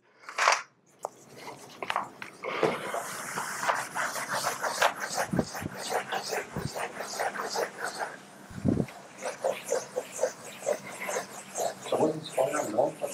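Blackboard eraser rubbing across a chalkboard in quick repeated back-and-forth strokes, a dry scrubbing that starts about two seconds in and keeps going, with a few dull low thumps in the middle.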